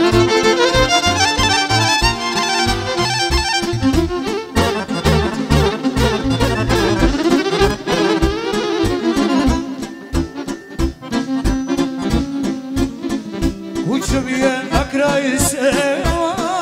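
Live folk music from a small band: accordion and violin playing a melody over a steady low beat, the violin's notes wavering with vibrato near the end.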